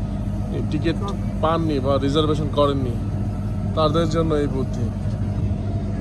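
People's voices talking in bursts over a steady low engine hum.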